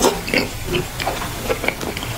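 Close-miked wet chewing and lip-smacking of a mouthful of fufu and egusi soup, a quick irregular run of short smacks and squelches.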